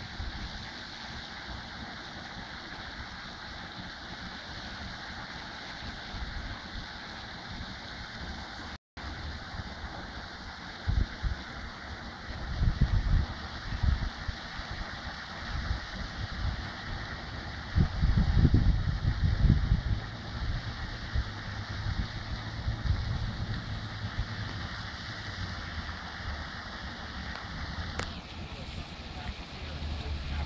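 Wind buffeting the microphone in gusts, the strongest about eleven to fourteen and eighteen to twenty seconds in, over a steady outdoor background hiss.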